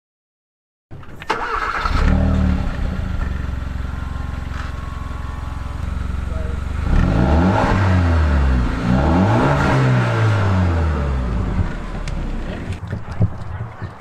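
Hyundai Veloster four-cylinder engine heard through its stock exhaust. It comes in about a second in and idles, then is revved a few times, rising and falling in pitch, before settling back to idle.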